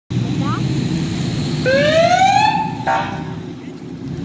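Police car siren giving a short chirp, then a rising whoop lasting about a second, followed by a brief steady blast about three seconds in. Underneath runs the low rumble of a column of motorcycle engines.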